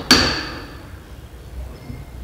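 A single sharp metal clank from a steel bench vise as it is tightened on the workpiece, ringing on for about half a second.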